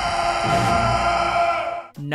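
A man's long war cry, held on one pitch, with film score underneath; it fades out just before the end.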